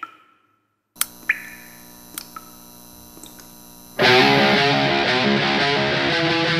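A click, then a quiet steady hum with a few sharp ticks. About four seconds in, a rock band comes in loud with heavily distorted electric guitar.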